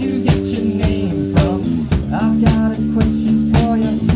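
Rock band playing live: electric guitars and a drum kit, with held guitar chords over a steady drum beat.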